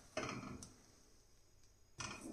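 A metal spatula scraping dry gram flour around a steel kadhai, faint and brief in the first half second, then near silence.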